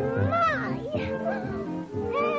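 Cartoon soundtrack music, with a high voice sliding up and down in pitch in short phrases.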